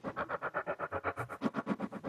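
Sempler, a Max for Live sampler-sequencer, playing a 16-step pattern of short slices cut from a recording of springs, about eight hits a second, with echo on them. The slice start points have just been randomized, giving a new pattern.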